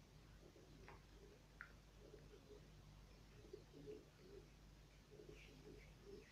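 Near silence: faint room tone with a steady low hum and a few faint, short low sounds, most of them in the second half.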